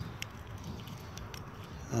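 Quiet outdoor background noise with a few faint, sharp clicks.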